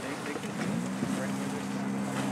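A motor engine comes up to speed about two-thirds of a second in and then runs at a steady, even low pitch, with faint voices behind it.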